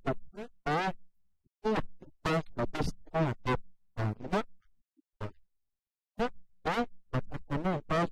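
A man speaking French in short choppy runs of syllables, the sound cut to dead silence between phrases.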